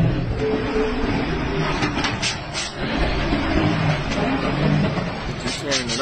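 People talking over the running engine and tyre noise of a heavy semi-truck as it manoeuvres a shipping-container trailer.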